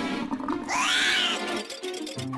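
Cartoon background music, with a loud animal-like cry about a second in that rises and then falls in pitch.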